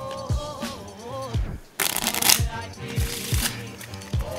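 A deck of playing cards being shuffled, with a loud rustling burst about two seconds in and a shorter one about a second later. Background music with a steady beat plays throughout.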